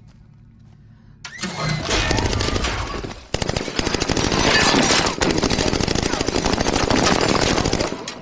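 Automatic rifle fire in a film soundtrack. After a noise that swells from about a second in, rapid continuous fire starts abruptly about three seconds in and runs on until near the end.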